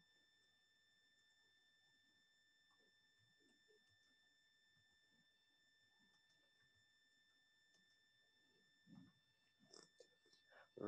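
Near silence: room tone of an online call, with a faint steady high whine.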